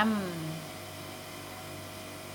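The tail of a spoken word, then a steady electrical hum with a faint hiss underneath.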